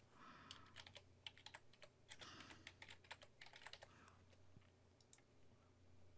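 Faint computer keyboard typing: scattered quick keystroke clicks at an uneven pace, over a low steady hum.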